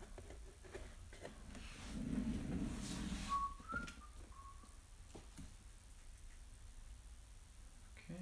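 A person whistling a few short, faint notes about three and a half seconds in, with light clicks of cards being handled.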